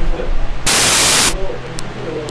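A loud burst of static-like hiss, just under a second long, starting about half a second in, over a steady low hum and faint voices.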